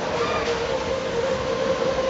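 Schlittenfahrt fairground ride's sleigh cars running at speed round their circular undulating track, a loud, steady rolling rumble like a train, with a steady hum in it.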